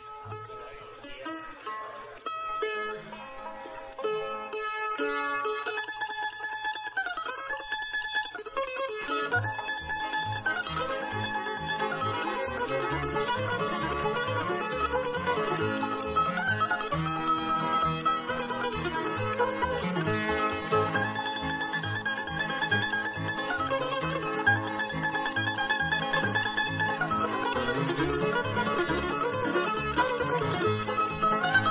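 Live bluegrass band starting an instrumental. A mandolin plays sparse plucked notes over light accompaniment at first, and an upright bass comes in with a steady walking pulse about nine seconds in as the full band of mandolin, fiddle, banjo and guitar plays on.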